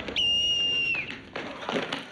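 A coach's plastic sports whistle blown once: a single steady high blast of just under a second, dipping slightly in pitch as it stops. It calls a halt to the exercise.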